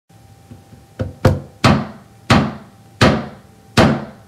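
Six sharp knocks on a wooden desk, unevenly spaced and spreading out a little, each with a short ringing tail.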